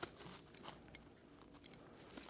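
Near silence, with a few faint clicks of a metal belt buckle and leather strap being handled, the first the loudest.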